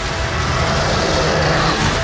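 Film-trailer score: low held notes under a rushing noise that builds and swells toward the end.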